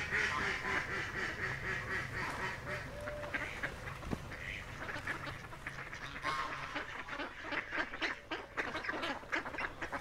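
Ducks quacking in a quick run of many short calls, which grow denser in the second half.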